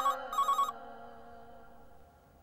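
Landline telephone ringing: two short electronic trills in quick succession, with music fading out beneath.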